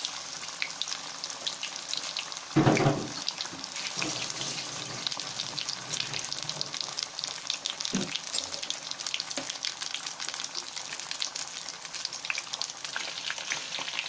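Batter-coated chicken pakoras deep-frying in hot oil in an aluminium kadhai: a steady, dense crackle and sizzle of bubbling oil. A brief louder bump about two and a half seconds in, and a smaller one about eight seconds in.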